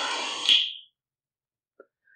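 An electronic buzzing, alarm-like noise flares briefly and cuts off within the first second, then the sound drops out to silence.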